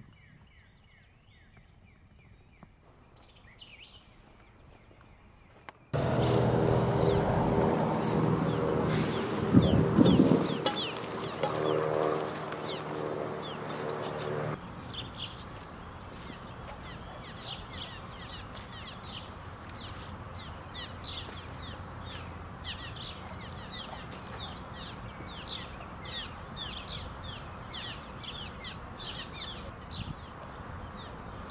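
Faint bird chirps at first. About six seconds in, a loud stretch of freeway traffic with an engine drone cuts in and drops away sharply near the middle. American cliff swallows then chatter in rapid, short high chirps under the highway bridge over a steady traffic hum.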